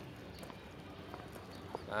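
Faint footsteps of people walking on a dirt path: a few scattered light steps and clicks.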